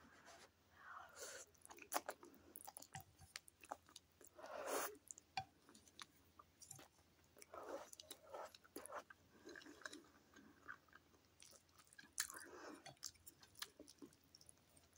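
Close-miked chewing of instant noodles, soft and wet, with many small mouth clicks and a few short slurps of noodle strands.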